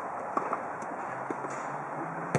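A few sharp taps of a futsal ball being played with the foot and players' running footsteps on artificial turf, two close together early and a fainter one later, over a steady hiss of background noise and a low hum in the second half.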